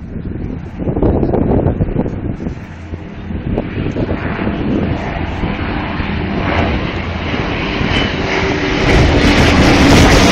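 Engine drone of an Avro Lancaster bomber's four Merlin piston engines together with a jet flying in formation, growing steadily louder as the pair approach. It is loudest near the end.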